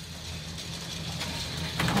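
Cable car cabin in motion, heard from inside: a steady low mechanical hum with light clicking and rattling that grows a little louder toward the end.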